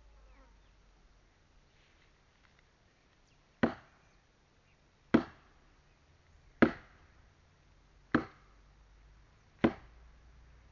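Five sharp chopping strikes into wood, evenly spaced about a second and a half apart, beginning a few seconds in: firewood being cut by hand with a chopping tool.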